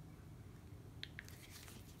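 Two faint, quick clicks about a second in: an iPhone's side button pressed through the button cover of a rugged protective case, showing how easily the buttons press through it.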